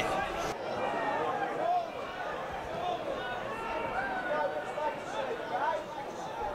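Distant voices of players and spectators at a football ground, a low murmur of chatter.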